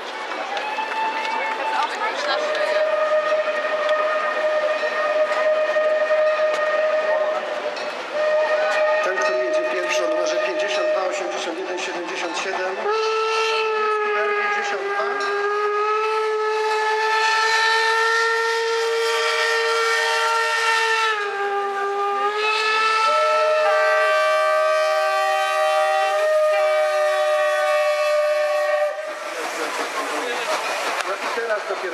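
Several steam locomotive whistles sounding together in long, overlapping blasts. The mix of pitches changes every few seconds, and all of them stop about a second before the end.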